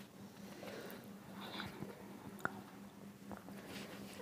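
Makeup blending sponge dabbed against the face: faint, soft, irregular pats, with one sharper click about two and a half seconds in.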